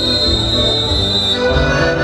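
Traditional Andean dance music from a live band, with one long, steady, high-pitched whistle blast over it that cuts off about a second and a half in.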